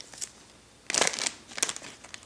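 Clear plastic bag around a wax melt crinkling in short bursts, about a second in and again a little later.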